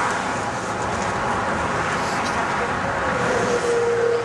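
Steady road traffic noise with voices in the background; a steady tone comes in near the end, sliding up slightly and then holding.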